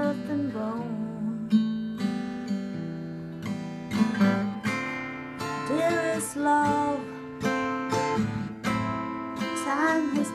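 Acoustic guitar strumming chords in a slow folk song, with a melody line gliding above the chords.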